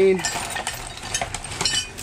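Short, irregular clinks of a metal chain, with rustling plastic bags, as a pile of loose hardware is rummaged through by hand.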